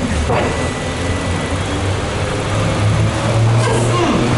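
A low, steady engine hum, growing louder about three seconds in.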